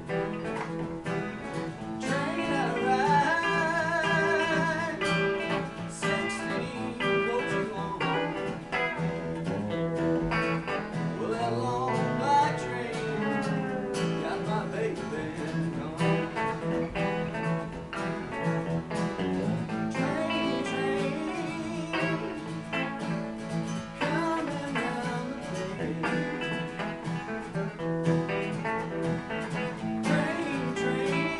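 Rockabilly guitar duet: a twangy Telecaster-style electric guitar plays lead lines over a steadily strummed acoustic guitar. There are wavering bent notes a few seconds in.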